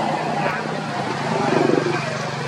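Indistinct voices over a steady low engine hum, briefly louder near the end.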